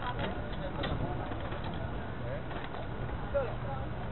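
Outdoor crowd ambience: faint, scattered voices of people nearby over a steady low background hum, picked up by a cheap camera microphone.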